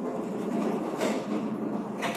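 Steady room din of a busy restaurant dining area, a continuous low rumbling noise with a faint hum and a brief faint tick about a second in.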